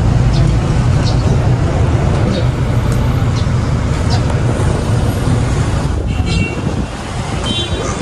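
Street traffic noise dominated by the steady low rumble of a nearby motor vehicle's engine, which eases off about six to seven seconds in.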